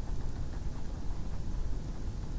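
Low steady rumble of microphone background noise, with faint small scratches and taps from a stylus writing on a tablet.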